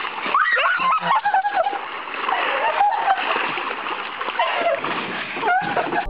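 Water splashing under footsteps on a water-covered pool cover, with raised voices over it.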